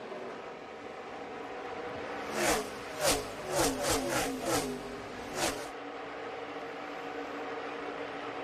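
A field of NASCAR Xfinity Series stock cars racing. Their V8 engines drone steadily, then a pack of about six cars passes close by in quick succession between about two and five and a half seconds in, each engine note dropping in pitch as it goes past.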